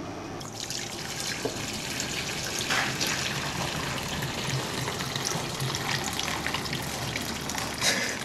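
Hot cooking water poured from a pot through a small stainless steel colander into a steel sink, a steady splashing that starts about half a second in.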